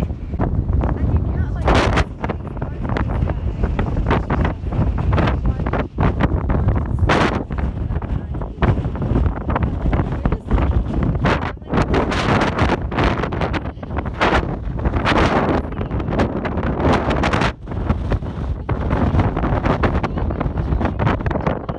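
Strong wind buffeting a phone microphone: a deep, uneven rumble with repeated sharper gusts, strong enough to push a walking person along.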